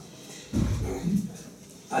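Two short, low, muffled sounds from a man's breath and voice right at a handheld microphone during a pause in speech: one about half a second in, a shorter one about a second in.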